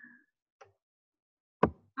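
A single sharp click about a second and a half in, from selecting the pen tool while writing on a presentation slide on the computer, after a faint breath-like noise at the start.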